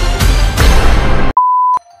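A loud, dense burst of edited-in sound-effect music lasting about a second and a half, cut off abruptly by a single short, steady bleep tone of the censor-beep kind. A click follows, then near silence.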